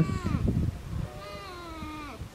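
A cat meowing: one long call, about a second in, with a slightly falling pitch.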